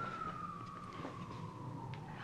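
A siren's single wailing tone, its pitch sliding slowly downward.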